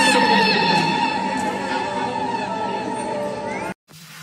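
Music with sustained held notes and gliding tones, cutting off abruptly just before the end.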